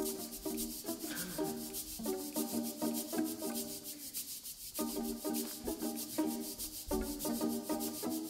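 Live jazz-tinged chamber ensemble playing an instrumental passage: a fast, even rhythm of short high strikes from the drum kit under repeated short chords in the middle register. The chords pause briefly about halfway, then resume.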